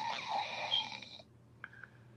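A man snoring, heard faintly over a live-stream call: one long, noisy snore that ends a little over a second in.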